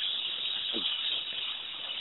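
Steady hiss of a phone-line connection in a gap between speakers, with a faint brief murmur of a voice about three-quarters of a second in.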